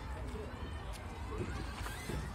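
Voices of children and adults talking and calling, too indistinct to make out words, over a steady low rumble.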